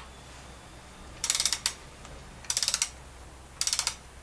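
Ratchet wrench clicking in three short bursts of fast clicks, turning a bolt on the underside of the truck during an oil change.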